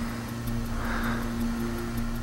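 A man breathing hard into a camcorder's built-in microphone, one breath about a second in, over a steady low hum.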